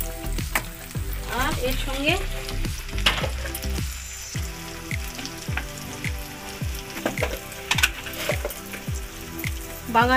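Tomato masala with freshly added ground spices frying and sizzling in a black iron kadai, stirred and scraped with a metal spatula.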